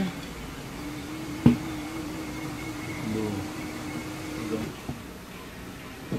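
Tire changer's turntable motor running for about four seconds, turning the wheel while the tire bead is worked over the mount/demount head, with a sharp knock about a second and a half in.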